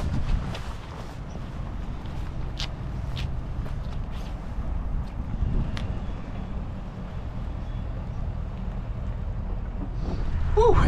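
A truck engine running steadily, with a few light clicks over it.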